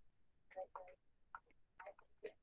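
Near silence, with a few faint, short ticks.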